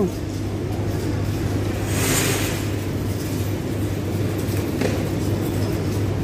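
Store ambience: a steady low hum under a noisy background bed, with a brief hiss about two seconds in.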